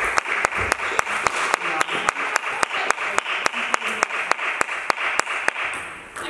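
Spectators applauding a point, with one person's fast, even clapping, about five or six sharp claps a second, standing out over the general clapping; it dies away near the end.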